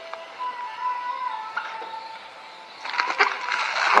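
Clear plastic air-column cushioning bag crinkling and rustling as a box is handled and pulled out of it. The rustle is light at first and becomes a dense crackle about three seconds in.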